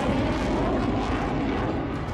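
F-35A fighter jet's F135 turbofan in afterburner as the jet flies away: steady jet noise that grows duller toward the end as the higher sounds fade.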